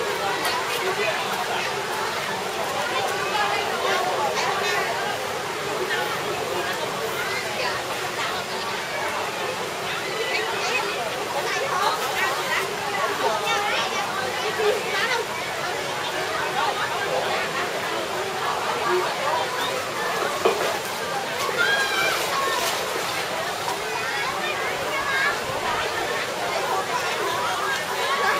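Mixed chatter and children's voices from many bathers in a swimming pool, over steady water sloshing and splashing.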